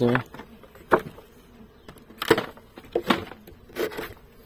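A metal hive tool prying and knocking against wooden beehive frames, giving several sharp knocks. Honeybees buzz around the open hive.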